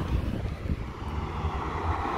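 Sports cars driving slowly past at low revs, giving a steady low engine rumble: a Nissan GT-R pulling away, and a faint steady engine note from an approaching Porsche 911 coming in about a second in.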